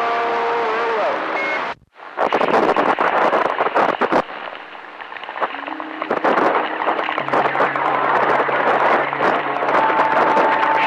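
CB radio receiver on channel 28 hissing with static and crackle between transmissions. Steady whistle tones sit under the noise. The sound cuts out briefly just under two seconds in, then comes back as dense crackling static.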